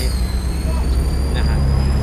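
A motor vehicle's engine running close by: a heavy steady low rumble that grows stronger, with a steady high-pitched whine over it, under brief bits of a man's speech.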